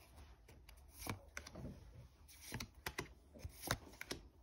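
Duel Masters trading cards being flipped through and set down by hand: a scattering of faint, light snaps and taps as cards slide off one another and land on piles.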